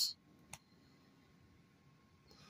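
A single short click about half a second in, then near-silent room tone.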